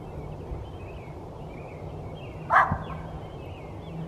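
Pit bull straining at the leash and breathing hard out of excitement, with faint, wavering high whines. One short, sharp sound from the dog comes about two and a half seconds in.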